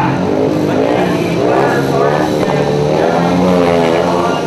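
Several speedway motorcycles' single-cylinder engines revving, their pitch rising and falling in overlapping swoops.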